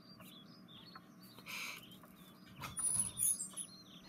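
Faint birds chirping and tweeting in a string of short calls, with a cluster of higher, sharper whistles about three seconds in.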